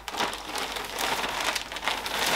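Plastic packaging crinkling and rustling steadily as it is handled and opened.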